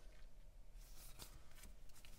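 Faint rustling and a couple of light clicks of paper sticker sheets being handled and shuffled.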